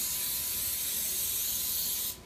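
Aerosol cooking spray hissing in one steady, continuous spray as it coats a baking sheet.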